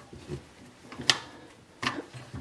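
Plastic PVC drain parts clicking as a sink P-trap and tailpiece are fitted back together by hand: two short sharp clicks, about a second in and near the end.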